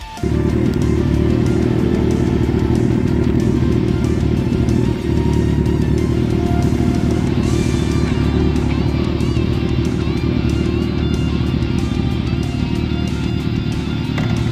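Kawasaki ZX-14R sport bike's inline-four engine idling close by: a loud, steady low rumble.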